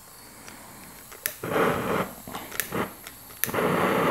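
Hand-held propane torch being lit with a spark striker without catching: gas hisses from the open valve in two spells, with sharp clicks of the striker about a second in and twice more later.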